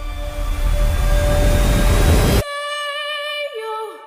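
Trailer soundtrack: a swelling, rumbling crescendo over held tones that cuts off suddenly about two and a half seconds in, followed by a held chord that slides down in pitch near the end.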